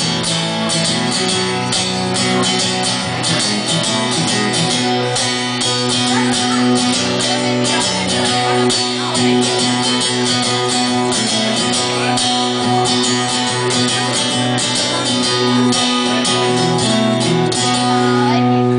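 Acoustic guitar strummed steadily, playing chords with no singing over them.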